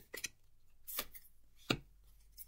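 Tarot cards handled and shuffled by hand: a few sparse clicks of cards against each other, the sharpest a little before the end.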